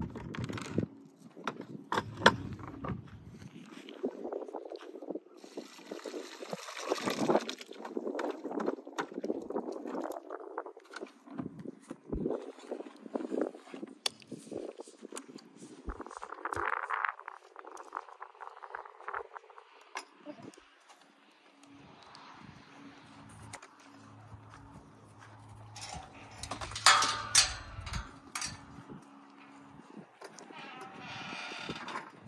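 Plastic buckets being handled and emptied, soaked horse feed and water poured out, with scattered knocks and rustles; a low steady hum runs for a few seconds near the end.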